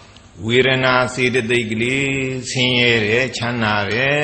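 A Buddhist monk chanting Pali text in a steady, intoned male voice that begins about half a second in.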